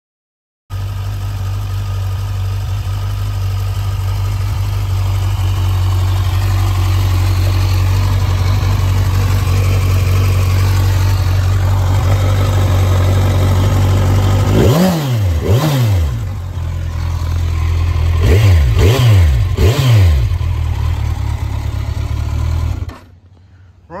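A Kawasaki Z1000SX's inline-four engine idles steadily, then is blipped on the throttle: twice, about 15 seconds in, and three more times a few seconds later. Each blip's revs rise and fall quickly. The sound cuts off suddenly near the end.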